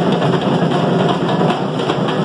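Percussion band of large surdo bass drums and snare drums, beaten with sticks, playing together in a dense, steady groove.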